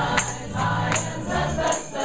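Small choir singing a gospel song in unison over low bass notes, with a hand-held tambourine struck on the beat about once a second.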